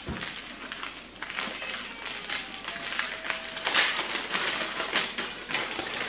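Gift wrapping paper being torn and crinkled by hand in quick irregular crackles as a present is unwrapped.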